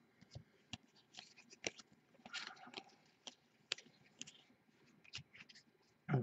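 Faint, scattered clicks and light scrapes of cardboard trading cards being flipped through by hand, about ten in all.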